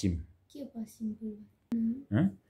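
Soft speech: a voice repeating a short word several times in quick, clipped syllables, with a single sharp click near the end.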